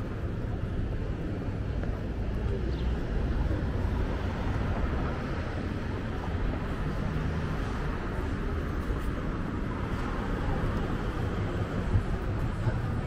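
Steady low rumble of city street traffic, with a haze of background street noise over it.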